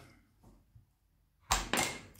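Near silence, then about one and a half seconds in a sharp knock followed quickly by a second: a Subbuteo figure flicked by finger into the plastic ball, which is driven into the goal for a shot.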